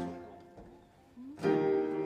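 Steel-string acoustic guitar in a song pause: a strummed chord rings out and fades to near silence, then a new chord is strummed about a second and a half in.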